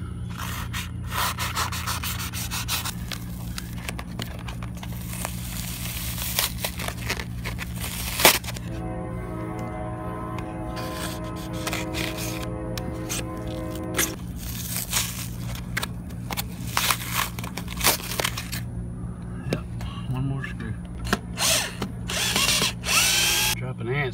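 Power drill running steadily for about five seconds in the middle, driving out a panel screw. Before and after it, scraping and crackling as expanding spray foam is pulled away by hand.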